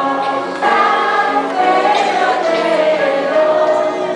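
Children's choir singing a Christmas song together, holding long notes, with a brief break between phrases about half a second in.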